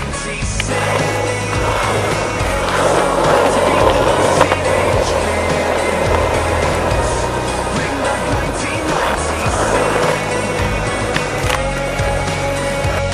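Skateboard wheels rolling on rough asphalt, with a few sharp clacks of the board, over a background song with a steady beat.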